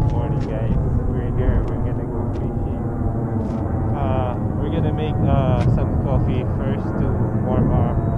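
A steady low rumble, with brief indistinct talking around the middle.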